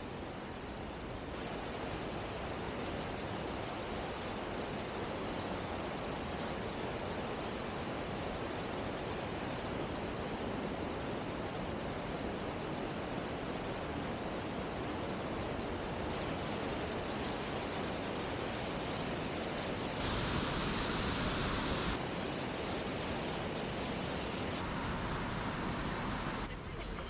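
Rushing river water over rapids and a small weir waterfall, a steady dense hiss. It swells briefly louder about twenty seconds in.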